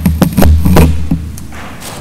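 Several thuds and taps, most of them in the first second, over a low rumble that fades after about a second, like knocking and handling noise close to the microphone.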